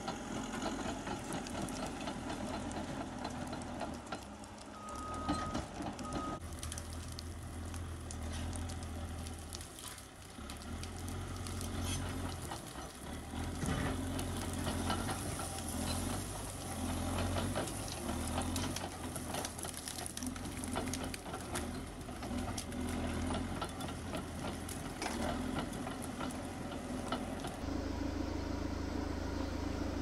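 Diesel engine of a crawler bulldozer working, its low hum rising and falling with load, with clanking and knocking from the tracks and blade as it pushes through brush. Near the end it gives way to a steadier, even noise.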